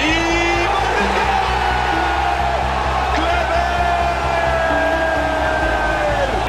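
A football commentator's single drawn-out shout, held for several seconds and slowly falling in pitch, over crowd noise and a background music bed.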